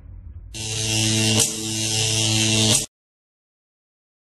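Electric buzz sound effect: a steady humming buzz with a hiss of static on top. It starts about half a second in, gives a sharp crackle about a second later, and cuts off abruptly just before three seconds in.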